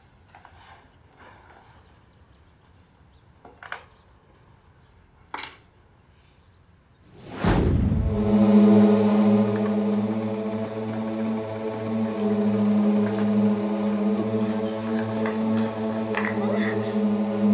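A dramatic sci-fi sound effect. After a few faint knocks in near quiet, a sudden loud whoosh sweeps in about halfway through and gives way to a loud, steady electronic drone with a deep hum. It marks the arrival of a mysterious blinding light.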